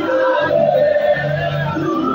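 Live gospel praise-and-worship music through a concert PA: sung vocals holding long notes over steady bass.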